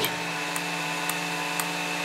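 Steady electrical hum with a thin high whine from the running FuG 16 airborne radio set, with faint ticks about every half second.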